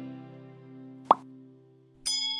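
Held notes of an intro music chord dying away, with one short pop sound effect about a second in, the kind of click that goes with an animated subscribe-button graphic.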